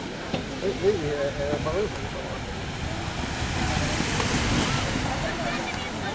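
Pack of inline speed skaters rolling by on the track, their wheels making a rushing sound that swells about halfway through and then fades. Wind rumbles on the microphone, with faint voices early on.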